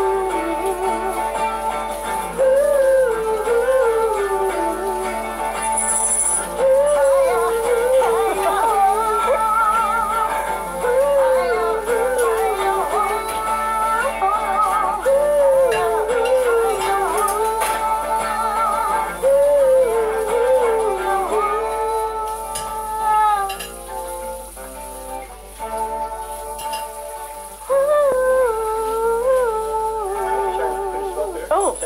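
A small band playing a song live, a melodic phrase with vibrato repeating every few seconds over guitar chords. The music thins out and drops back for a few seconds late on, then the phrase comes back at full level near the end.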